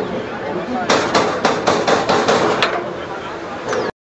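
Yawei HPE servo turret punch press hitting in a rapid run of about ten punching strokes, roughly five a second, that starts about a second in and stops after about a second and a half. The machine runs on steadily underneath, and the sound cuts off abruptly just before the end.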